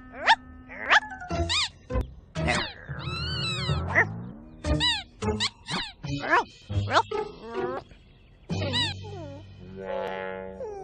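A cartoon puppy's short playful yips, grunts and whimpers, made in a voice actor's voice, over gentle children's background music.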